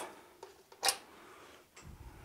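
Small clicks from handling a studio flash head as it is switched off: one sharp click a little under a second in, with fainter ticks before and after.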